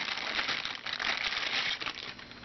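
Clear plastic bag crinkling and rustling as a multimeter is pulled out of it, the crackling thinning out near the end.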